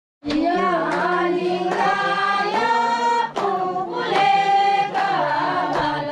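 A group of women singing together in unison, with hand claps keeping time a little more often than once a second.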